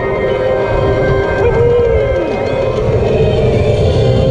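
Music playing from a roller coaster car's onboard speakers, over the rumble of the moving ride and wind. About a second and a half in, a falling tone sweeps down through it.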